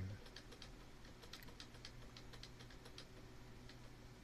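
A computer keyboard's F11 key being tapped over and over, faint quick clicks about four a second, to call up the PC's boot menu during start-up. A steady low hum runs underneath.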